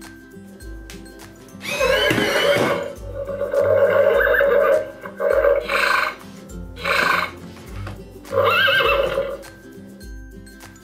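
Horse whinnies, a recorded sound effect, several in a row with wavering pitch; the first is the longest. They play over background music with a steady bass beat.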